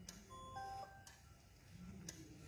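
Near silence: faint room tone, with a brief cluster of faint steady tones about half a second in and a couple of light ticks.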